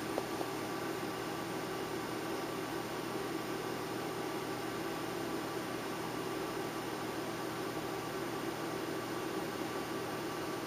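Steady background hiss with a faint low hum, with a couple of small ticks just after the start; the light brush strokes on the toenail are not distinctly heard.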